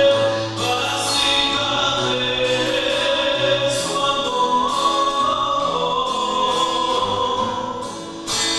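A choir singing a slow sacred hymn in long held notes, in several parts, with a phrase trailing off near the end.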